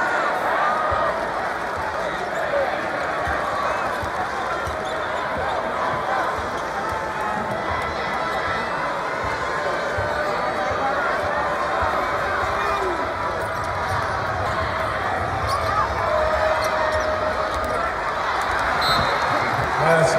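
Basketball game crowd in a large arena: many voices chattering and calling out, with the dull thuds of a basketball being dribbled on the hardwood court.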